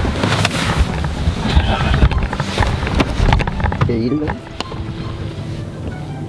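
Rustling, knocks and handling noise of a handheld camera and people shifting about inside a parked car, with a brief voice sound about four seconds in. Steady background music with held tones takes over for the last second and a half.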